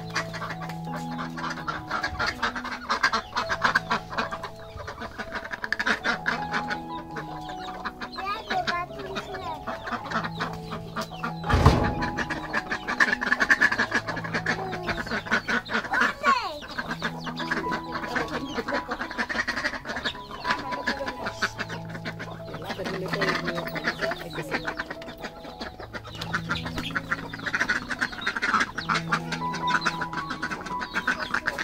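Domestic hens clucking, with ducks calling among them, over background music with a looping tune. A single sharp knock comes about twelve seconds in.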